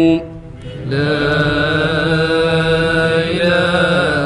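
Unaccompanied male voice chanting an Arabic elegy (qasida) in drawn-out, wavering notes. There is a short pause for breath just after the start, then a long held line.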